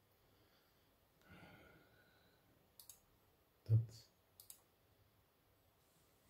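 Computer mouse clicks while answering an on-screen quiz: light double clicks near the middle and again a little later, with a louder short knock between them.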